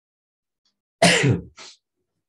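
A person sneezing: a sudden loud burst about a second in, falling in pitch, followed by a short, softer breathy burst.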